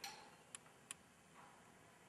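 Three faint glass ticks, at the start, about half a second in and just under a second in, as the neck of a glass reagent bottle touches the rim of a test tube during pouring; otherwise near silence.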